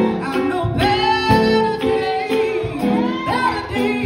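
A woman singing through a microphone, holding long notes with vibrato, over live keyboard accompaniment.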